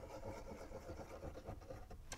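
Very quiet room tone with a faint steady hum and no distinct event.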